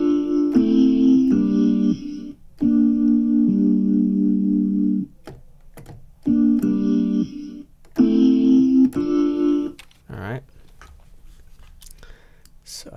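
Electric-piano-style keyboard chords, slices of a keys loop triggered from the EXS24 sampler: a run of sustained chords, a pause, then a shorter run. The playback sounds a little off, which the producer puts down to the tempo shift.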